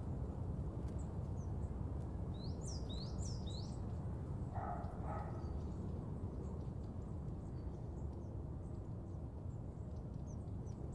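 Steady low background rumble of outdoor ambience, with a quick run of high bird chirps about two and a half to three and a half seconds in and a short, lower call about five seconds in.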